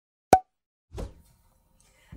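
Intro sound effect for a logo: one short, sharp plop about a third of a second in, then a softer, lower hit about a second in that quickly dies away.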